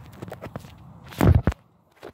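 Footsteps and handling noise from a camera being carried across grass: scattered knocks and rubbing, with one heavy bump a little over a second in.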